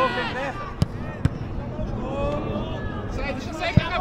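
Sharp knocks of a football being kicked on the pitch, two close together about a second in and one near the end, over players' distant shouting.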